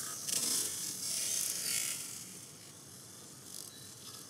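Raccoons clambering on a tree trunk, their claws scratching and rustling in short bursts that fade after the first two seconds.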